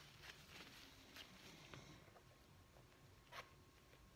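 Near silence, with faint rustles and soft ticks of gloved hands spreading resin over a canvas; one slightly sharper click about three and a half seconds in.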